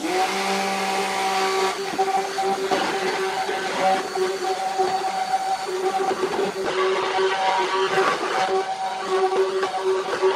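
Handheld stick blender running steadily while submerged in a tub of oils and goat milk, its motor whine over the churning of the liquid as the soap base is blended until creamy.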